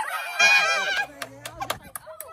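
A woman's excited, high-pitched shriek lasting about half a second, followed by a few sharp hand claps.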